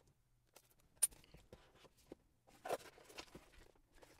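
Small cardboard product box being opened by hand: a sharp click about a second in, then a short run of soft scraping and rustling as the lid is worked open.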